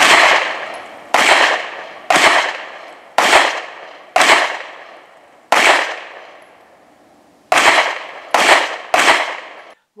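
Nine loud handgun shots at a slow, deliberate pace, about one a second with a two-second pause partway through. Each shot rings off over about a second.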